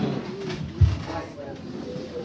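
A man's voice over a church loudspeaker, low and halting, with a short low thump a little under a second in.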